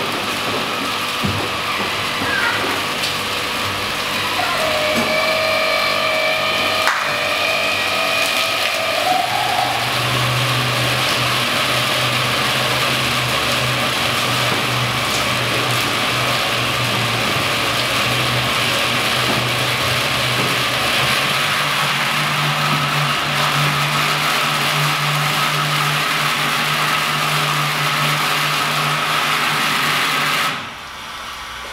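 Brewery boil kettle at a rolling boil, a steady hiss and rumble with steam venting. A low motor hum joins about a third of the way in and rises slightly in pitch past the middle. The noise stops abruptly at the very end.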